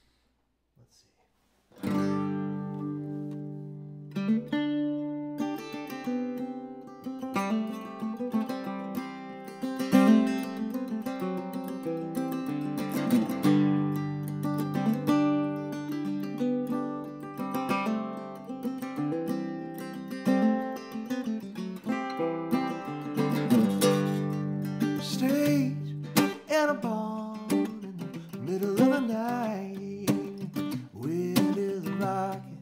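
Acoustic guitar with a capo playing the strummed intro of a folk song, coming in about two seconds in after a brief silence and playing steadily on.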